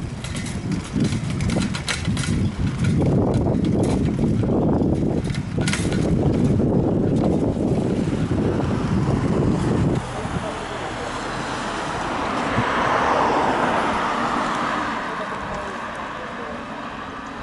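Wind buffeting the camera microphone while riding a bicycle, with clicks and rattles. It drops off suddenly about ten seconds in. A swell of road traffic noise follows, loudest a few seconds before the end.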